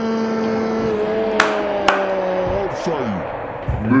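A man's voice holding one long steady note, stepping up slightly about a second in, then sliding down in pitch about three seconds in. Two sharp clicks, like claps, fall in the middle of it.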